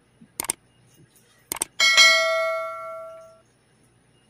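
Subscribe-button animation sound effect: two mouse clicks, then a bright bell ding that rings out and fades over about a second and a half.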